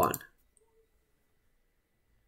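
A voice finishes a spoken word, then near silence with a single faint click about half a second in.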